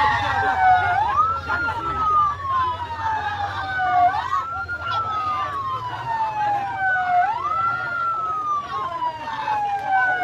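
Ambulance siren wailing in a repeating cycle: a quick rise in pitch, then a slow fall, about every three seconds, with crowd voices underneath.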